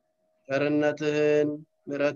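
A man's voice chanting in a steady, held pitch, starting about half a second in, lasting about a second, and returning just before the end.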